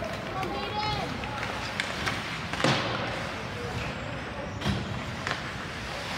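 Ice hockey play: a sharp crack of stick on puck about two and a half seconds in and another near five seconds, over steady rink noise and distant shouting.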